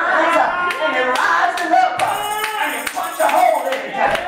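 Hand clapping in a steady beat, about two to three claps a second, with a raised voice running over it.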